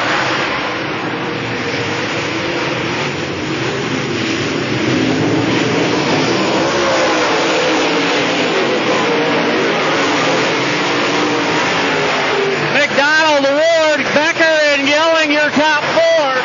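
Dirt late model race cars' V8 engines running at speed around a dirt oval, a loud, steady blend of engine noise. Near the end the pitch of a near engine rises and falls rapidly several times.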